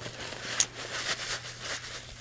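Paper towel crinkling and rustling as gloved hands crumple and wipe with it: a quick run of crisp rustles, the sharpest about half a second in.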